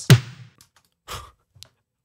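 A snare drum hit played back through the ChowTapeModel tape-saturation plugin, loud and sudden with a short ringing tail, followed about a second in by a quieter, shorter sound.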